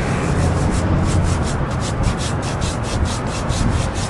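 A hand scrubbing loose coconut-coir absorbent granules back and forth over an oil stain on concrete, working the fibre into the stain. It is a rhythmic rubbing of about four to five strokes a second.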